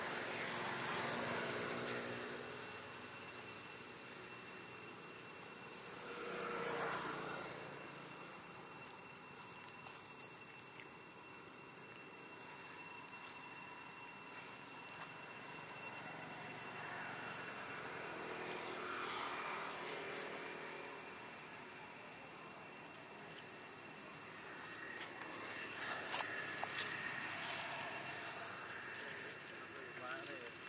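Motor vehicles passing one after another, each swelling and fading over a couple of seconds, about four times, over a faint steady high-pitched whine.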